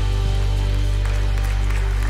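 Worship band's keyboard pad and bass holding one steady sustained chord, with no singing over it.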